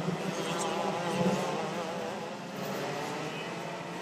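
Two-stroke racing kart engine running at speed with a high buzz, its revs wavering up and down as the driver works the throttle, a little louder about a second in.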